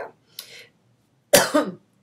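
A woman's single cough, sharp and loud, about a second and a half in, after a faint breath in.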